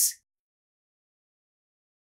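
Silence: the last word of a spoken sentence fades out in the first fraction of a second, then the sound track is completely silent.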